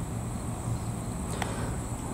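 Outdoor ambience: a steady high-pitched insect drone over a low steady hum, with one faint tick about one and a half seconds in.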